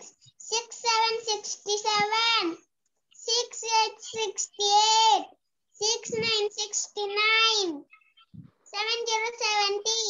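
A young child reciting numbers aloud in a high, sing-song voice, in short phrases of a second or two with brief pauses between them.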